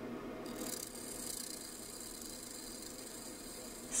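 Faint scraping hiss of a bowl gouge cutting the inside of a spinning mesquite bowl on a wood lathe, coming in about half a second in and holding steady.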